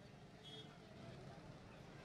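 Faint, distant street traffic: a low, steady rumble of passing cars and scooters.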